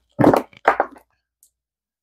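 Two short handling noises, clicks and rustles of multimeter test leads and connector wires being moved across the bench, about a quarter and three quarters of a second in.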